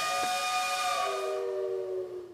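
A steam whistle blowing a steady multi-tone chord over the hiss of escaping steam, its pitch sagging slightly lower about halfway through.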